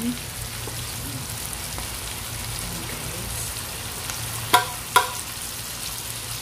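Chicken breasts and mushrooms sizzling steadily as they fry in a pan. Near the end, two sharp knocks about half a second apart.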